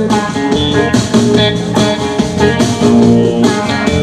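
Live rock band playing an instrumental passage, electric guitar to the fore over drums.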